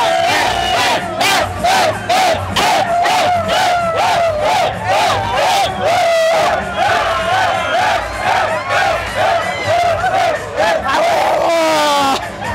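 A crowd shouting and chanting together in a steady rhythm, about two shouts a second, ending with a long falling shout.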